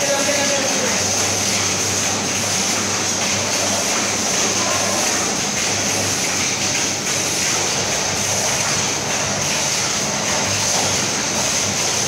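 Automatic vertical form-fill-seal pouch packing machines running steadily, a continuous mechanical clatter over a steady high-pitched hiss and a low hum.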